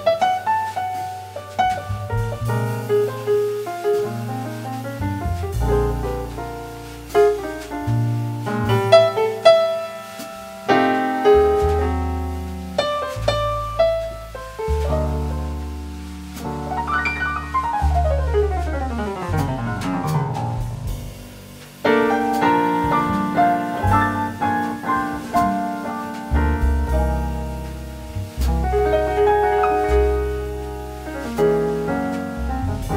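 Live small-group jazz led by piano over a bass line, with no vocals. About two-thirds of the way through, the piano plays a long run sweeping down the keyboard.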